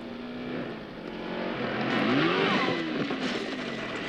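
Car engine sounds from an action film playing on a television: an engine revving up and falling away, loudest about two seconds in, over a noisy background.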